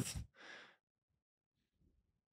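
The tail of a man's spoken word, then a short, soft breath about half a second in, followed by near silence.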